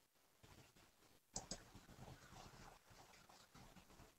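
Near silence, with two faint computer mouse clicks in quick succession about a second and a half in.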